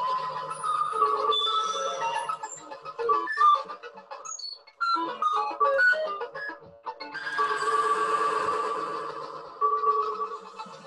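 Two modular synthesizers played live in an improvised jam: short bleeping, jumping and gliding electronic notes, with two brief drops in sound, then a denser sustained chord with hiss from about seven seconds in. Heard as lo-fi audio through a video call.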